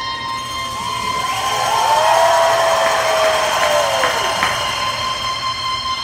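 Solo saxophone holding a long high note that rings through the arena. A crowd's cheering swells in about a second in and dies back by about four and a half seconds.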